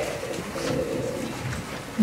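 Faint low murmur with light rustles of paper handled near a handheld microphone.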